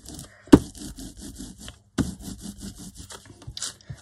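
A brayer rolled back and forth over a paper journal page, spreading gesso: a fast, even run of small sticky crackles as the roller turns. There is a sharp knock each time it comes down on the page, about half a second and two seconds in.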